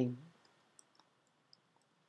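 A few faint computer keyboard keystrokes, a word being typed.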